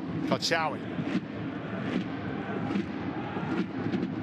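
Football match broadcast ambience: a steady low rumble of stadium sound under open play, with no single loud event.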